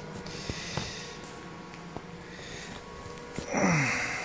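Quiet background with a faint steady hum and a few light clicks. Near the end, a short breathy vocal sound from a man, falling in pitch, like a grunt or snort.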